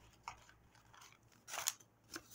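Dyed paper being handled: faint rustles and small crinkles, with one short, louder rustle about one and a half seconds in.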